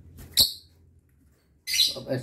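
A single short, sharp lovebird chirp about half a second in.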